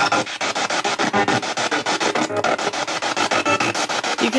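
Portable radio sweeping rapidly through stations as a ghost-hunting 'spirit box', played through a JBL speaker: choppy hiss and snatches of broadcast sound cut into about ten short chops a second. The uploader captions the fragments as a spirit voice saying 'We are coming.'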